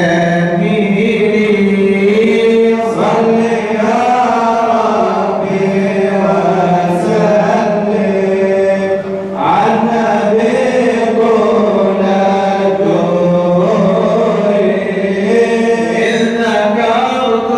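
Men's voices chanting madih nabawi, sung praise of the Prophet Muhammad, in long drawn-out notes, with a short dip a little past nine seconds.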